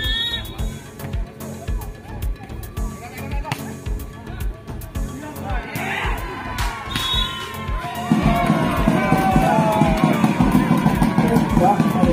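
Background music with a steady beat. Spectators' voices rise over it from about six seconds in, then grow into louder crowd shouting and cheering from about eight seconds in.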